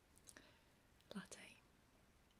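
Near silence broken by two short, faint whispered sounds from a woman's mouth, one about a third of a second in and a slightly longer one just after a second in.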